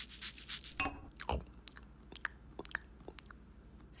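A small spice jar shaken over a plate, rattling for about the first second, followed by scattered soft crunchy clicks of someone chewing food.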